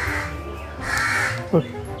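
A crow cawing twice, about a second apart, over background music.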